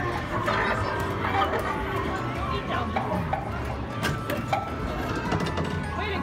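Busy arcade hubbub: electronic game music and jingles mixed with the voices of other people, with scattered short clicks and knocks.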